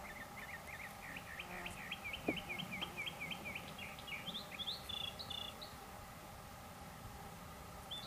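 A songbird calling a fast series of repeated down-slurred chirps, about four a second, that rise to a few higher notes and stop a little past halfway, with a single soft click about two seconds in.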